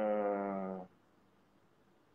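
A long, drawn-out hesitation "uhhh" from a person's voice, held at one slightly falling pitch and fading out about a second in, then near silence.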